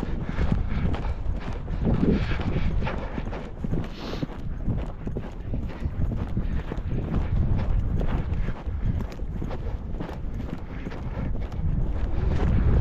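Hoofbeats of a ridden three-year-old gelding on dry grassland: a steady run of footfalls.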